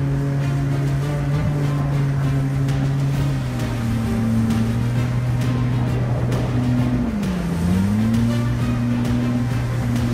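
Outboard jet motor on a small skiff running under power, its note stepping down slightly a few seconds in, then dipping briefly and coming back up near the end, with background music over it.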